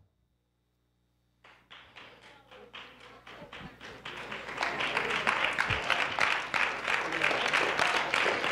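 A church congregation clapping and applauding. It starts about a second and a half in and keeps getting louder.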